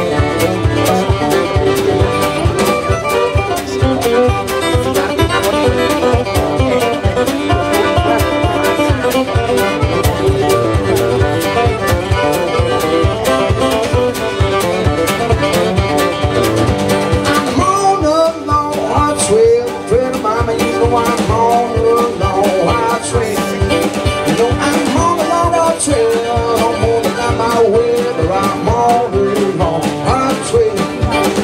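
Instrumental break in a live acoustic blues song: acoustic guitar, piano accordion and drum kit playing together over a steady beat, with a wavering lead melody rising above them from a little past the middle.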